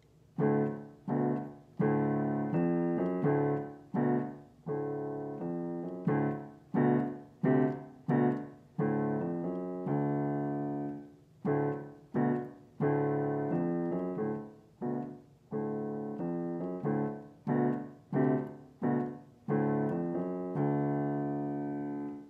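Digital piano playing chords in the middle register to a steady beat, some short and detached, some held, with loud and soft passages in turn. It ends on a longer held chord that is released.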